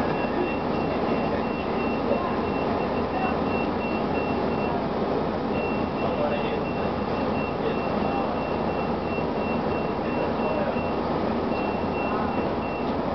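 Inside a 1999 Gillig Phantom transit bus, its Detroit Diesel Series 50 engine running steadily under a high-pitched electronic warning beeper. The beeper sounds about three times a second, breaks off briefly around the middle and again near the end, then resumes.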